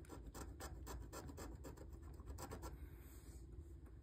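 A coin-shaped scratcher rubbing the coating off a scratch-off lottery ticket in quick short strokes, several a second, faint.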